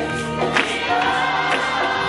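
Gospel choir singing with instrumental accompaniment, over a sharp beat struck about once a second.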